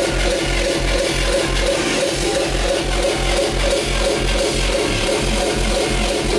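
Hardcore techno played loud over a festival PA from a DJ set, with a heavy, fast kick drum hitting about three times a second under a repeating synth line.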